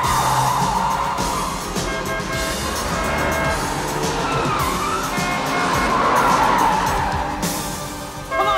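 Film chase soundtrack: a car engine running hard with wavering tyre squeals, under a music score that comes in with held notes about two seconds in.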